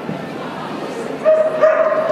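A dog giving two short, high-pitched barks about half a second apart.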